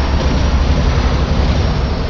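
Steady highway road and engine noise inside a large truck's cab: a deep, even drone under a constant rush of noise.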